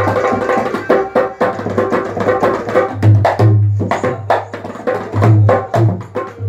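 Dholak, a two-headed Indian barrel drum, played by hand in a fast, dense rhythm. Sharp slaps on the treble head mix with deep, booming bass-head strokes, which are heaviest around the middle and again near the end.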